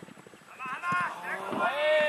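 Several men shouting calls to each other during football play. The shouts start about half a second in and grow louder toward the end, after a few faint knocks in the quieter first half second.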